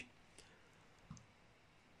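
Near silence broken by two faint computer mouse clicks, the first under half a second in and the second about a second in.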